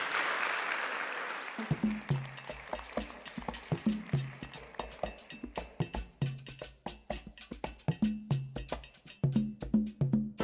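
Applause dying away as a solo hand drum starts up about two seconds in, playing a rhythm of low pitched strokes mixed with sharp clicks.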